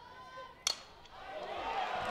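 A softball bat striking a pitched ball once, a sharp crack about two-thirds of a second in, as the ball is hit deep. The crowd noise then swells steadily.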